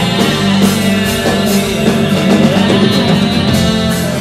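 Live band music from a slow rock song, with a Roland RD-700SX stage piano playing alongside the band.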